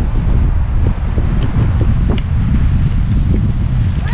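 Wind buffeting the microphone: a loud, steady low rumble with no clear pitch.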